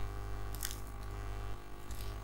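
Low steady hum of the recording's background noise, with two faint short clicks, one about half a second in and one near the end.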